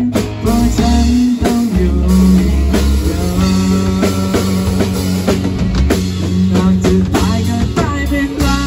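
A rock band playing a song live on electric guitar, bass guitar, drum kit and acoustic guitar.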